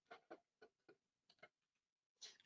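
Near silence with about five faint, irregular clicks of a computer mouse.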